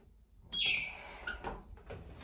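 A short high electronic chirp from the lift car about half a second in, dropping in pitch, then a few sharp clicks and knocks as the car door starts to close.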